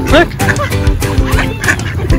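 A few short duck quacks over background music with held notes.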